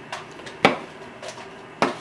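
Chef's knife cutting through mushrooms and knocking on a plastic cutting board: two sharp knocks about a second apart, with a few fainter ticks between.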